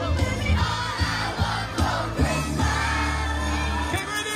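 Upbeat song playing loud over a PA system, with a steady bass line and drum beat, and a crowd singing along.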